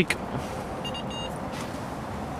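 Two short electronic bleeps from a carp fishing bite alarm, about a third of a second apart, over a steady outdoor hiss. They are the sign of a liner: a fish brushing the line on another rod.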